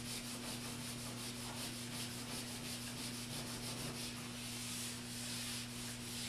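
Whiteboard eraser rubbing across a dry-erase board in quick, repeated back-and-forth strokes, over a steady low hum.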